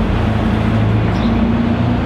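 Street traffic close by: a vehicle engine running as a steady low hum, a little stronger in the second half.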